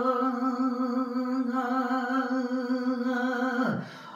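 A man singing Punjabi kalam holds one long note in full voice with a slight waver. Near the end the note dips in pitch and breaks off.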